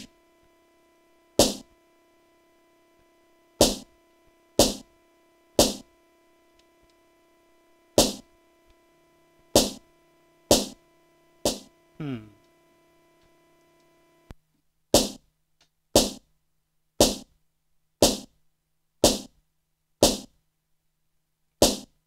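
Single snare hits played one at a time from the Akai MPC One's pads, unevenly at first and then about once a second in the second half. A steady tone sounds under the first two-thirds, slides down in pitch near the middle and cuts off at about 14 seconds.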